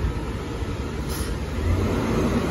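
Diesel engine of a Heil Half/Pack Freedom front-loading garbage truck running as the truck pulls in, a low rumble that grows louder near the end, with a brief high hiss about a second in.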